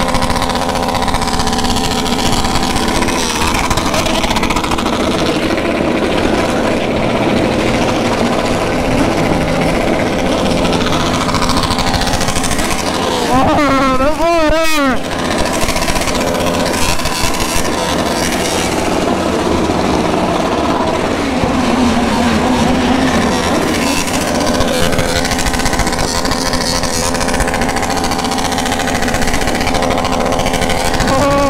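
Motorcycle engines running at idle, with a quick series of throttle blips rising and falling in pitch about halfway through.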